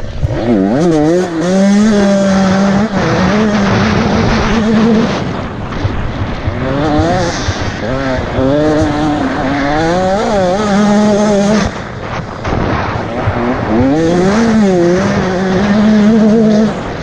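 Off-road enduro motorcycle engine being ridden hard, its pitch climbing and falling again and again as the throttle is opened and closed through the gears, with a short drop about twelve seconds in. Wind rushes over the helmet-mounted microphone.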